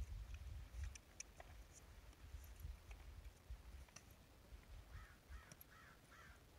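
Near silence with a low rumble. Near the end a crow caws about four times in quick succession.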